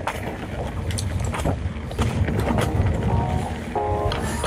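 A Devinci mountain bike on Michelin tyres rolling down a dry dirt trail: a steady low rumble from the tyres on the dirt, with scattered clicks and rattles from the bike as it rides over bumps.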